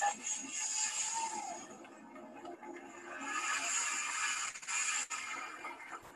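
Music accompanying a traditional Indonesian dance, heard as a recording played back over a video call. It drops quieter about two seconds in and comes back up about a second later.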